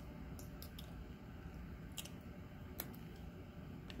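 Faint, scattered clicks and light taps over a low room hiss, from fingers handling plasticine figures on a tabletop.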